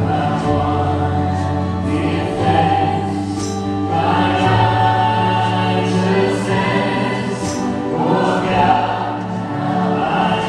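Live worship band music: singing voices over electric bass, keyboard and drums, with light cymbal strokes.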